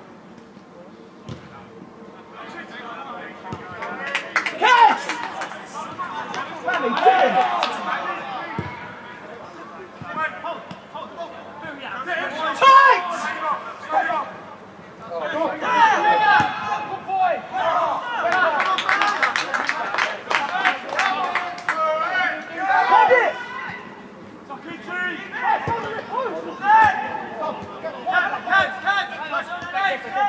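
Players' and onlookers' voices shouting and calling across an outdoor football pitch, with occasional sharp thuds of the ball being kicked.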